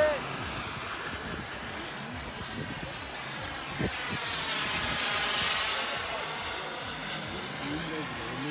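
Radio-controlled model jet flying a pass over the runway: a high engine hiss that swells as it comes by, loudest about five seconds in, then fades.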